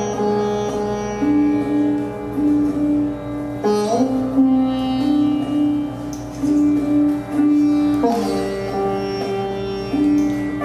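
Sitar playing a slow raga, its notes bending smoothly from pitch to pitch, with fresh plucked strokes about four and eight seconds in.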